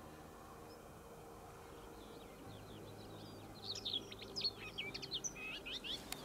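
A songbird singing a rapid run of high chirps and whistles. The song starts about two seconds in and grows busier and louder in the second half, over a faint steady low hum.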